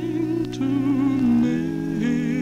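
A cappella male gospel vocal group singing held chords in close harmony, played from a 1949 78 rpm shellac record. The lowest voice steps up to a higher note about a second and a half in.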